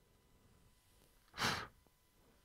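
One short, breathy exhale or puff of breath close to the microphone, about a second and a half in, against a faint steady background.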